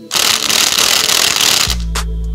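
Cordless impact wrench hammering for about a second and a half as it runs down the flywheel nut on the crankshaft, then cutting off. Music with a heavy bass line comes in loudly near the end.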